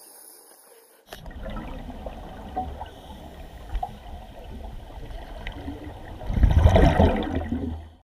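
Underwater scuba-dive audio: a low rumbling, gurgling water noise that starts abruptly about a second in, with a loud surge of a diver's exhaled regulator bubbles near the end.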